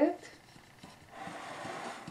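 Wooden spatula stirring dry flour and salt in a ceramic bowl: a soft scraping rustle that starts about a second in, after a few faint ticks.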